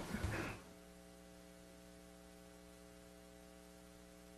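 Steady electrical mains hum on the audio feed. It is an even drone of several steady pitches that is left once a voice stops about half a second in.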